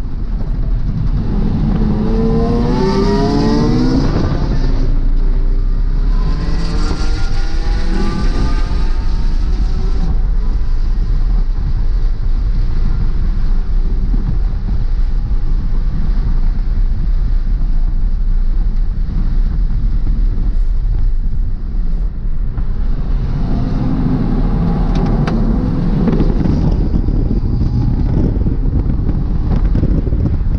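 Ford Fiesta ST's turbocharged 1.6-litre four-cylinder, heard from inside the cabin on track, revving hard under acceleration. The pitch climbs twice in the first ten seconds, settles into a steady drone with road and wind noise, then climbs again about three-quarters of the way through.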